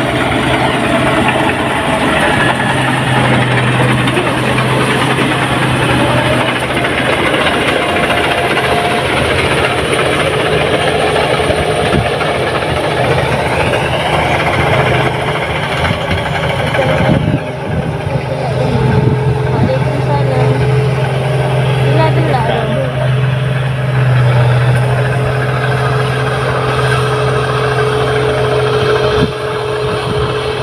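New Holland 8060 combine harvester running steadily, a continuous engine and machinery hum.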